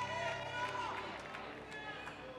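The echo of a man's amplified voice dying away in a large hall, leaving faint voices over a steady low hum.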